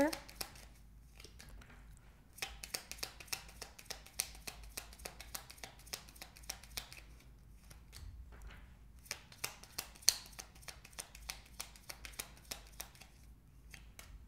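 A tarot card deck being shuffled by hand: a long run of quick, irregular card clicks and snaps, the sharpest about ten seconds in.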